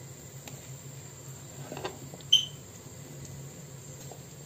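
Mango slices frying quietly in oil in a pan, under a steady high-pitched whine and a low hum. A little past halfway comes a soft rustle, then a single sharp, ringing clink.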